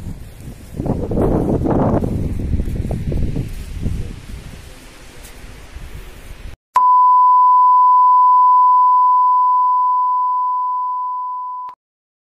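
A steady, pure electronic test-tone beep, loud and unbroken for about five seconds, starting abruptly about two-thirds of the way in and cutting off sharply near the end. Before it there is outdoor noise on a phone microphone.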